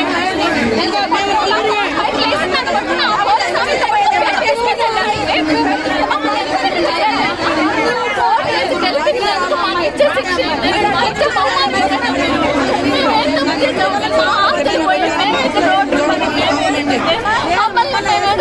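A woman speaking Telugu in a tearful, breaking voice, close to the microphones.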